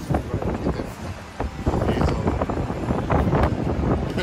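Wind buffeting an outdoor microphone over street noise, with indistinct voices.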